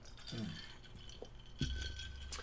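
Quiet room with a faint short murmur early on, a small click, and a soft knock about one and a half seconds in, followed by a low rumble.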